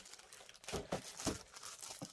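Scrapbooking paper sheets rustling and crinkling as they are handled, with a few short rustles around the middle.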